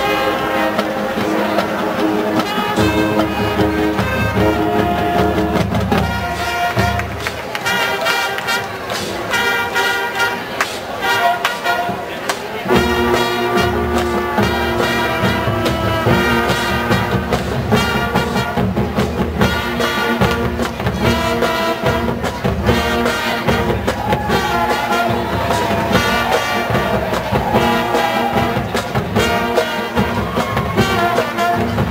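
College marching band playing: brass over a drumline beat. The low brass thins out about seven seconds in, and the full band comes back in about halfway through.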